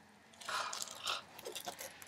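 Faint, irregular crackling and rustling, starting about half a second in.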